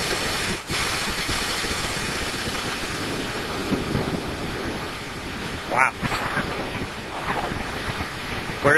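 Amateur rocket's first-stage motor firing: a steady, loud rushing hiss, with a brief voice heard faintly near the middle.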